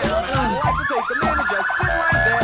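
A police-style siren sweeping steadily up in pitch, with quick up-and-down wails partway through, over hip-hop music with a heavy beat.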